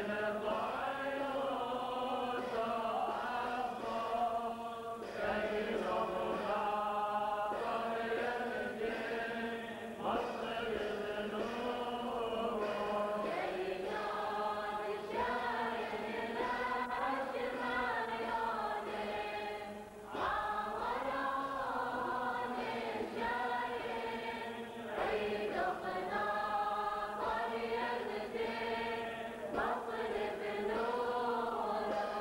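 Male voices singing Syriac Catholic liturgical chant, a priest leading from a book, in phrases a few seconds long with short breaths between them.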